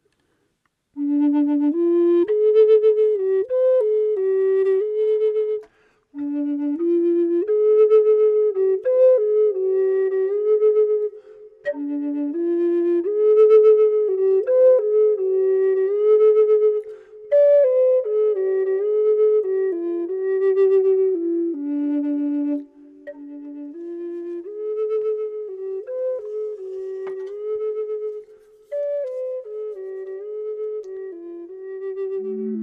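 A Native American flute plays a slow lead melody in the minor pentatonic, in phrases with short breaks for breath between them.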